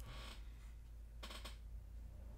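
Quiet room tone with a steady low hum, and one faint, short noise a little past halfway.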